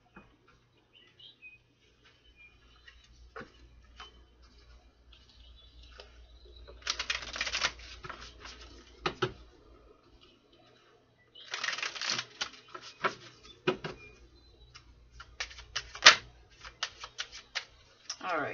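A tarot deck being shuffled by hand: two quick rattling runs of cards, about seven and twelve seconds in, then a string of separate card snaps and taps near the end.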